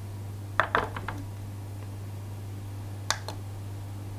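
A few light knocks and clinks from a mixing bowl and spatula being handled on a kitchen scale: a quick cluster of four about half a second to a second in, then two more near the end, over a steady low hum.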